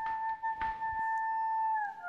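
Background music: one long held melody note, likely a flute or other wind instrument, that slides down just before the end into a lower note.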